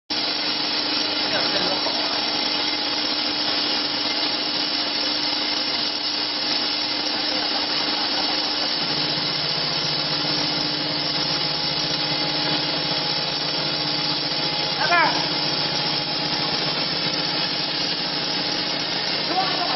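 Corn puff extruder running: a steady mechanical rush from its electric motor, belt drive and extrusion screw as puffs spray out of the die, with a constant hum; a lower hum joins about halfway through.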